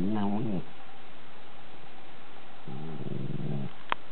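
Italian greyhound grumbling in low, whiny mutters: one complaint trailing off with a falling pitch just after the start, and a second shorter one about three seconds in. A single sharp click comes just before the end.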